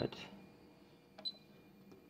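Two short clicks of the push buttons on a Schneider Conext SCP control panel as it is worked through its menus, one a little over a second in and one near the end.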